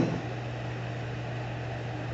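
Room tone: a steady low hum with a faint, even hiss underneath.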